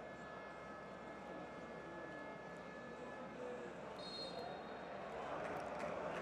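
Faint stadium crowd noise from a football broadcast: a steady murmur of the crowd that grows slightly louder near the end.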